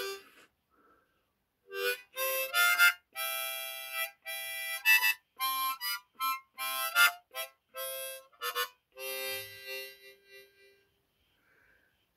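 Diatonic harmonica played in a quick run of short notes and chords, starting about two seconds in and trailing off near the end.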